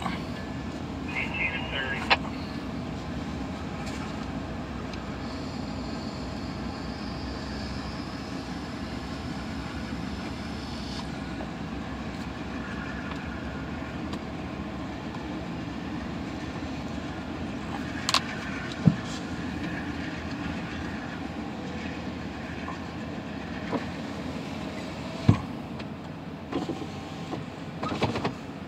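Amtrak GE P42DC diesel locomotives and Superliner passenger cars rolling slowly past on departure: a steady rumble of engines and wheels on the rails, broken by a few sharp clanks, two close together about two-thirds of the way in and another near the end.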